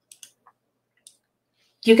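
A few faint, short computer mouse clicks advancing a presentation slide, then a woman begins speaking near the end.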